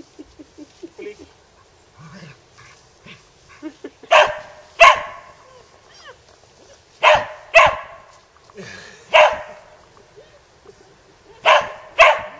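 Border collie barking: six loud, sharp barks, mostly in quick pairs, starting about four seconds in.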